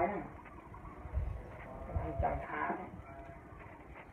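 A lull in a man's speech: a faint voice in the background and a few low bumps.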